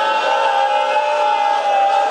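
A man's voice holding one long sung note of a lament, steady in pitch.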